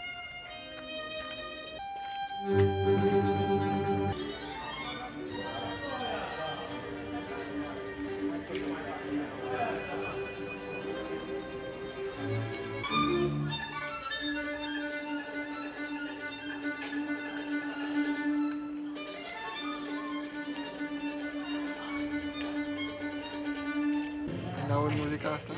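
Classical string music: a violin leading a string ensemble, with long sustained notes and one low note held through the second half.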